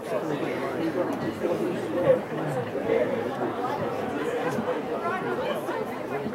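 Indistinct, overlapping chatter of spectators' voices, with one brief louder moment about two seconds in.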